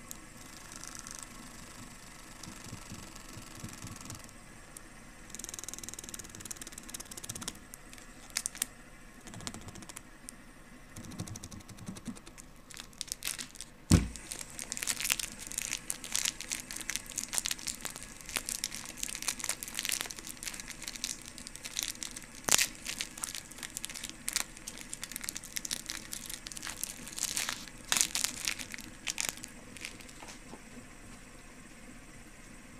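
The plastic wrapper of a mini Bounty chocolate bar being crinkled and pulled open by hand. The handling is soft at first, with a single sharp knock about halfway through, then busy close-up crinkling and crackling for the rest.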